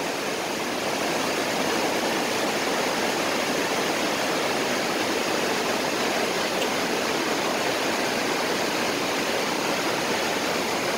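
Steady rushing of a river's whitewater rapids.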